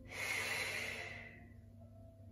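A woman's audible out-breath, one long exhale that fades away after about a second and a half, taken as she twists down in a Pilates side plank.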